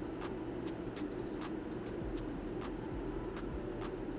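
Quiet room hum with faint, scattered light clicks of hands handling a smartphone.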